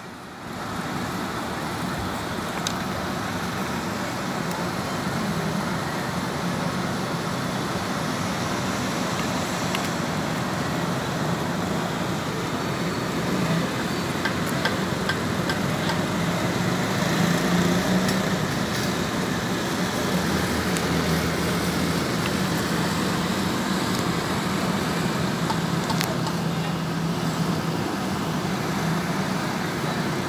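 Steady road traffic noise from the street below, an even rush with a low engine hum running through it.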